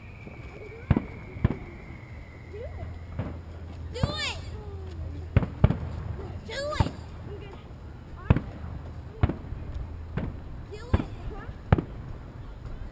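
Aerial fireworks shells bursting: a string of sharp bangs, roughly one a second, with a couple of whistling glides in the middle.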